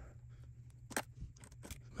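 A few faint, sharp clicks of a small precision screwdriver being turned on a tiny screw to back it out, the clearest about a second in.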